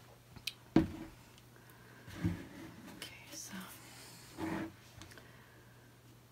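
A woman speaking softly and sparsely ("okay", "so... I'm") over a faint steady low hum, with one sharp knock about a second in.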